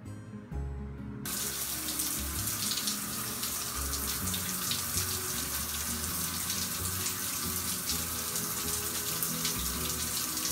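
Water running steadily, switched on about a second in, as the hands are wetted to lather a cream face wash.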